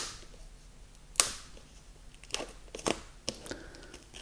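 A cardboard steelbook fullslip is opened by hand, with a sharp snap at the start and another just over a second in, then a few lighter clicks and rustles of card.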